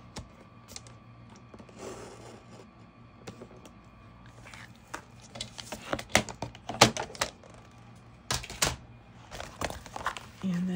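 Paper trimmer and a glossy sticker sheet being handled during a cut: a brief rustle, then a string of sharp clicks, taps and crinkles of stiff paper against the plastic trimmer, with a short scratchy burst near the end.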